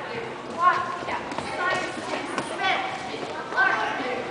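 High-pitched girls' voices calling out in a rhythmic chant, with a few short sharp hits in between.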